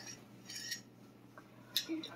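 A person sniffing a wax sample through the nose: a short sniff about half a second in, then a faint click from the handled plastic sample cup near the end.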